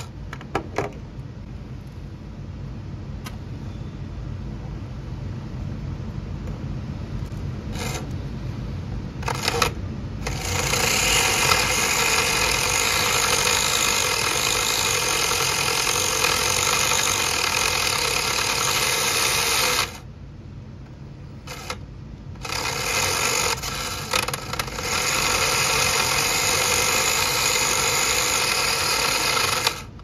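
Small electric motor of a converted 1/24 slot car whirring as it spins the rear wheel against a razor knife that is trimming the wheel's plastic rim, used like a makeshift lathe. It runs loud in two long stretches, from about ten to twenty seconds in and again from about twenty-three seconds to the end, with a quieter hum between.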